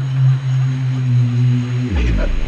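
Electronic dance music in a UK garage/dubstep vein: a single low synth bass note held steady, with a fainter higher tone above it. The note slides down in pitch at the very end, just before a new bass line and beat come in.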